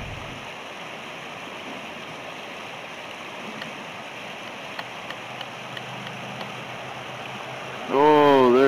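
Water gushing steadily from the discharge end of a diver's sediment-vacuum hose and splashing onto grass. The water is carrying sediment sucked from the floor of a potable water tank.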